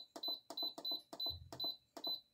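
Instant Pot electric pressure cooker's control panel beeping at each button press, a rapid run of short high beeps with clicks, about five a second, as the pressure-cook time is stepped up to ten minutes. The beeps stop near the end.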